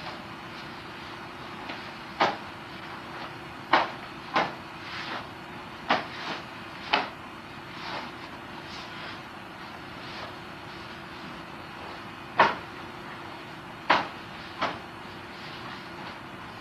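Wooden bo staff being swung and snapped to a stop during a kata: short, sharp swishes, about eight of them in quick groups with a pause of about four seconds in the middle. A steady faint hum runs underneath.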